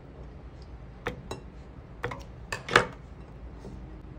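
A few light knocks and clicks, the loudest nearly three seconds in, as peeled garlic cloves are dropped into a plastic blender jug on top of cut chillies.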